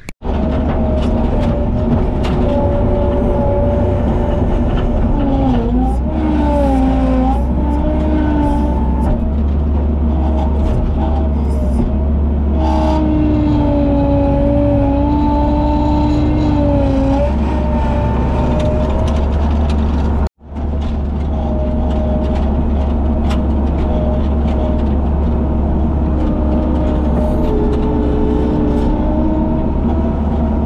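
Skid loader engine running steadily under load, heard from the cab, with whining tones that rise and fall as the loader works a bucket of shale. The sound drops out briefly about twenty seconds in.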